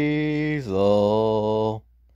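A person's voice drawing out the name "Hazel" on one long, low held note, which steps down in pitch a little over half a second in and stops shortly before the end.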